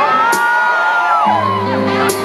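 Live band music on a concert stage, with a voice sweeping up into a long held high note that slides back down about a second and a half in, as the band's low notes come back in underneath.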